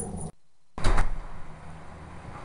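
A sharp knock about a second in, after a brief gap of silence, then a steady rushing noise: the wood fire in the rocket heater's open firebox burning with strong draft.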